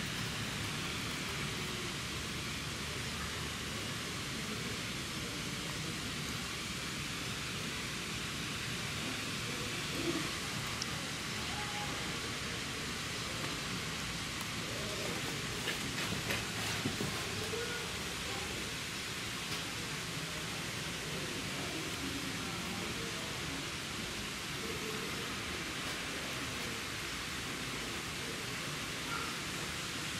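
A steady hiss with faint, distant voices in it and a few soft knocks near the middle.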